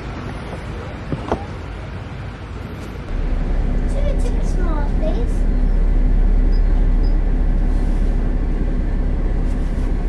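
Road traffic noise at a bus stop, then from about three seconds in the low, steady rumble of a single-decker bus's engine idling, heard from inside at the driver's cab.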